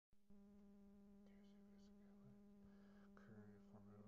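Near silence with a faint, steady buzzing hum that holds one pitch, with overtones above it.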